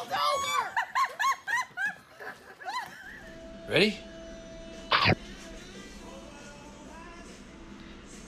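Excited voices shouting and laughing for about three seconds, then a steady indoor hum with two short rising spoken calls.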